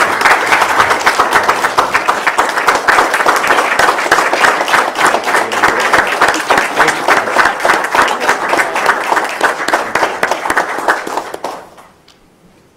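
Applause from a small group of people, with separate claps distinct and one clapper close by; it dies away shortly before the end.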